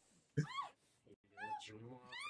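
Two short, high-pitched cries from a voice on the film's soundtrack, one about half a second in and one near the end, each rising and falling in pitch.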